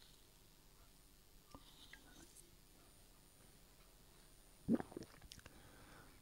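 Very quiet room tone with a few faint ticks, and one brief soft noise near the end.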